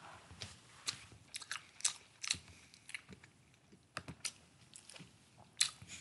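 Someone chewing food close to the microphone: a run of irregular, short crunches and wet mouth clicks.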